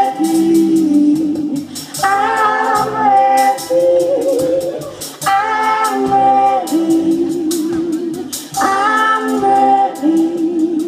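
Live band playing with a singer: a long, wavering sung phrase repeats about every three seconds over the band's bass and percussion.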